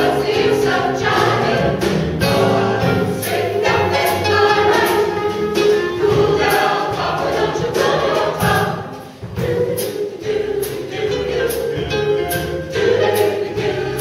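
Mixed-voice vocal jazz ensemble singing a swing tune in close harmony, without instruments, over a crisp high tick that keeps the beat about twice a second. The voices drop away briefly about nine seconds in, then come back in.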